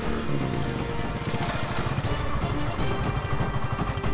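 Motorcycle engine running with a fast low putter as the bike rides up and comes to a stop, under background music.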